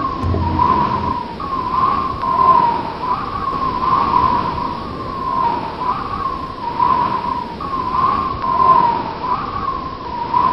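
A wavering high tone that rises and falls in a pattern repeating about once a second, over a steady hiss.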